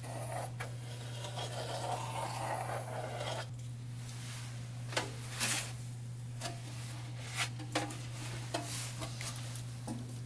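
A stainless steel sink being handled on a countertop: a scraping rub for the first few seconds, then scattered light metallic knocks and clunks as it is turned over. A steady low hum runs underneath.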